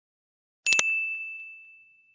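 Two quick mouse-click sound effects, then a bell ding that rings out and slowly fades: the sound effect of a notification bell being switched on in a subscribe animation.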